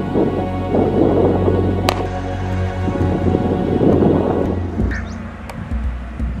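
Background music of sustained, held tones, overlaid by two swells of rumbling, rushing noise like thunder, one about a second in and one around four seconds, with a single sharp click near two seconds.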